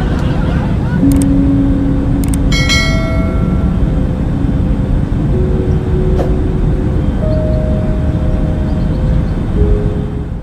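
Steady low rumbling ambience with faint tones that shift pitch now and then. About two and a half seconds in, a click comes with a bright ringing chime that fades over about a second.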